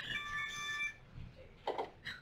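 A short electronic chime of several held tones lasting under a second, the closing sound of an online video ad, followed by a brief faint sound just before the end.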